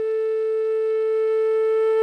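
Background flute music holding one long, steady note.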